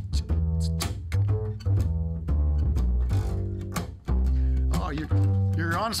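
Instrumental break of a live acoustic song: an upright double bass plucked in a steady line of deep notes, with a strummed acoustic guitar and a harmonica over it.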